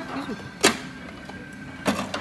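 Two sharp clacks of tableware knocked on a table, a little over a second apart, over the steady background noise of a busy restaurant.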